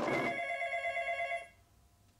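An electric bell rings once for about a second and a half. Its several metallic tones trill rapidly, then it cuts off sharply.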